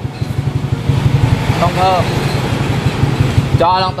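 Modified scooter's single-cylinder engine idling steadily at about 1,300–1,500 rpm with a fast, even low pulse.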